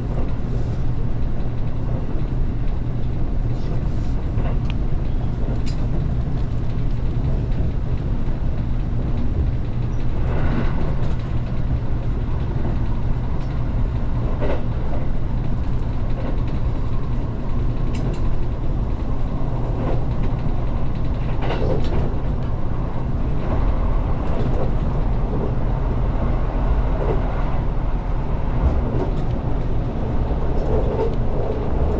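Limited express train running at speed, heard from inside the carriage: a steady low rumble of wheels and running gear on the rails, with a few sharper knocks from the track along the way.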